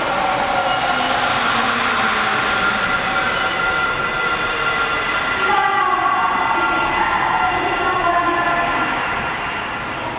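Sapporo Tozai Line rubber-tyred subway train moving through the station: a loud electric motor whine of several steady tones over a rumble, with pitches that glide down and up from about halfway, easing slightly near the end.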